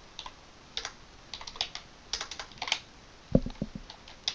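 Computer keyboard typing: scattered single keystrokes with short pauses between them, and a louder, deeper thump a little after three seconds in.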